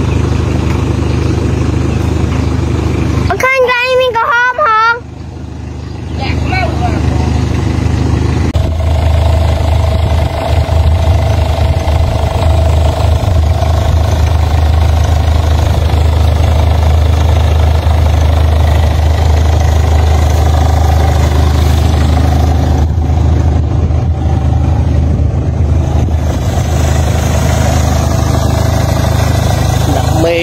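Light truck's engine running steadily, a low even rumble that grows fuller from about a third of the way in. A short wavering call rises over it about four seconds in.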